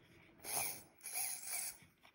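Small hobby RC servo driven by a ToolkitRC ST8 servo tester, its motor and plastic gear train whirring in three short bursts as the horn moves: the servo is responding on this channel.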